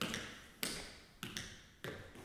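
Tap shoes striking a plywood floor: five sharp taps roughly half a second apart, two of them close together near the middle, each dying away with a short ring in the room.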